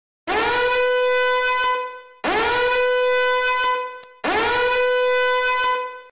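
A horn-blast sound effect played three times in a row, each blast about two seconds long, sliding up into one steady, held note, with short gaps between them.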